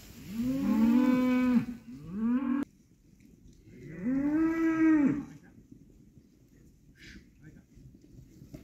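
Hereford cattle (young steers and heifers) mooing: three calls, each rising then falling in pitch. The second is cut off abruptly, and the third comes after a short gap. Low background noise follows.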